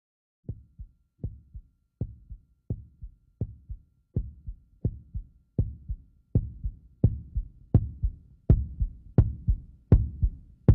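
Heartbeat sound effect: paired low thumps, a strong beat and a softer one, repeating at about 80 a minute and growing steadily louder.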